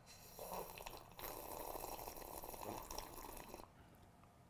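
A woman sipping a drink from a mug: a short faint sip, then a longer drawn-out sip of about two and a half seconds.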